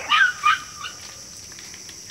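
A dog yelping: two short, high yelps within the first half second and a faint third one just after, each falling in pitch.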